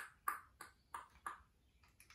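A run of short, light taps, about three a second, each dying away quickly.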